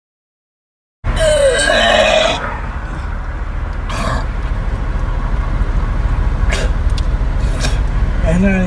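About a second of dead silence, then a phone recording cuts in abruptly beside a car with its door open: a steady low rumble runs under it all. A loud, short, pitched vocal sound comes in the first second and a half, and a few faint knocks follow.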